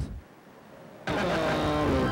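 Videotape playback in a VCR: about a second in, a loud burst of tape hiss starts abruptly as the picture locks in, with a falling tone running through it.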